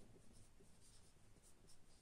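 Faint squeak and scratch of a felt-tip marker writing on a whiteboard, in a run of short strokes.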